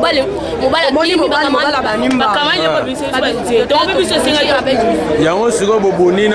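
Speech only: several people talking over one another in loud chatter.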